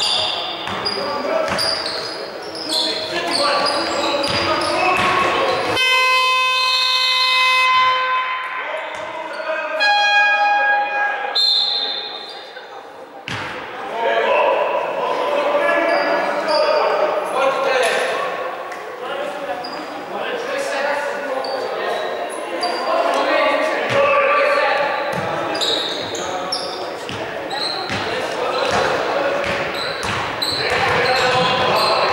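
Basketball game in an echoing sports hall: the ball bouncing on the wooden floor and players' voices calling out. About six seconds in, a steady horn-like buzzer tone sounds for about two seconds, followed by shorter pitched tones. Then the bouncing and voices carry on.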